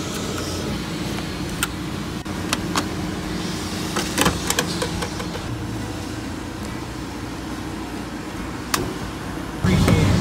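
Steady low rumble of vehicle engines and traffic at a gas station, broken by several sharp clicks and knocks from handling a fuel pump nozzle and a plastic gas can. A louder low rumble sets in suddenly just before the end.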